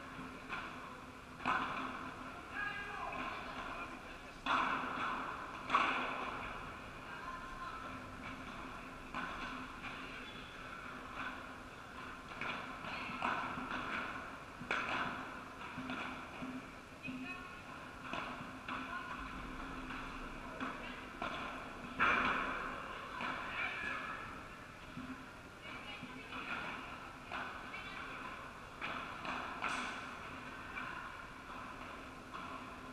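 Padel rally: irregular, sharp knocks of the ball struck by paddles and bouncing off the court and glass walls, echoing in a large indoor hall, with voices in the background.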